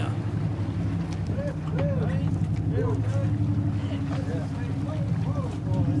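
A boat's engine running steadily at idle, with faint short calls of voices over it.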